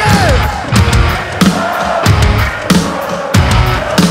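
Live nu-metal band playing loud through a festival PA: distorted guitars over a steady heavy drum beat of about three hits every two seconds, with a short note sliding down in pitch right at the start.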